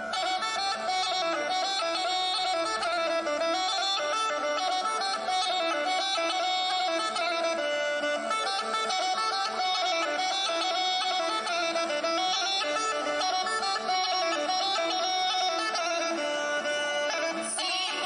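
Bulgarian bagpipe (gaida) playing a quick, ornamented folk dance tune without a pause.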